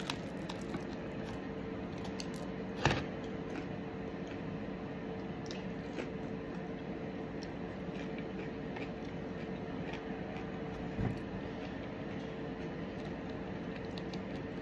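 A person chewing a bite of a hot, crisp-crusted air-fried plant-based cheeseburger, a bite that is too hot to eat comfortably, over a steady low room hum. A sharp click stands out about three seconds in, and a smaller one near eleven seconds.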